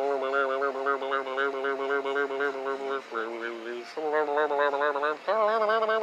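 A man humming long held notes with his mouth closed around a cheek swab, stepping between a few pitches, each note with a quick regular wobble.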